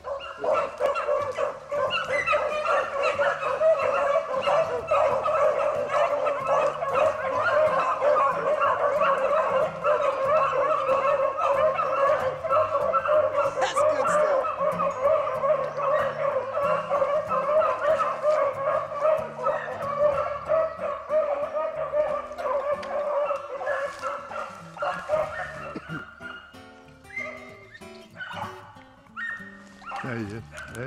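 A pack of rabbit-hunting hounds baying together on a chase, a dense, continuous chorus of many dogs that thins out and fades near the end.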